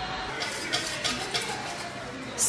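A utensil stirring gelatin powder into water in a small saucepan, with a few light, irregular scrapes and taps against the pan.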